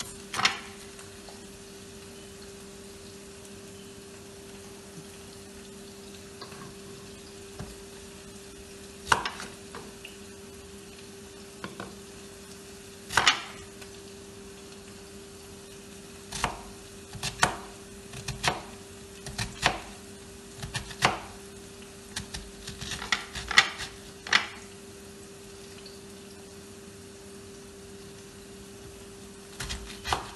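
Kitchen knife slicing through a head of cabbage onto a cutting board: sharp, irregular chops, single ones at first and then a quicker run of them past the middle, over a steady low hum.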